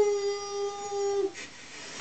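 A toddler's voice holding one steady note for about a second and a half, then breaking off.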